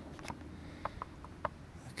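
A few faint clicks and knocks from a camera being mounted on a tripod and aimed, over a low steady background hum.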